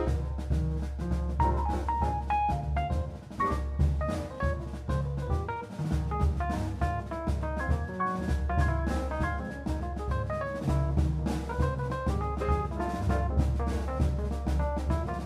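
A jazz quartet playing: piano lines over a double bass and a drum kit.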